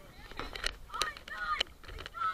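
Short, high-pitched cries from children in a swimming pool, about two in quick succession, mixed with splashing water and clicks against the camera.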